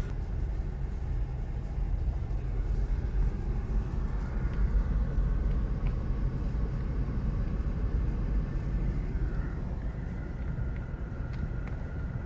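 Car heard from inside the cabin on a dirt forest road: a steady low rumble of engine and tyres, with a faint steady whine in the last few seconds.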